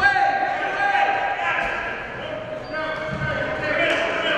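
Coaches and spectators shouting in a large gym, the voices high and echoing, with a few dull thumps from the wrestling mat.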